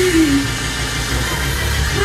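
Live gospel song with band accompaniment: a held sung note slides down and ends about half a second in, then the band plays on with a heavy, steady bass between the vocal lines.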